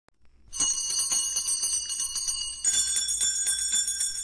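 A bell ringing rapidly and continuously in many quick strikes, starting about half a second in, its pitch changing about two and a half seconds in.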